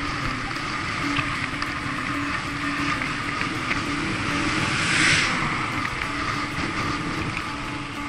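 Wind rushing over the microphone of a bicycle-mounted camera, with tyre noise and a steady hum from riding fast on asphalt. About five seconds in, a swell of noise rises and fades as an oncoming car passes.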